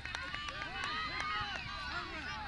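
Many overlapping, fairly high-pitched voices of players and sideline spectators calling out at a youth soccer game, with no single voice clear, and a few light clicks among them.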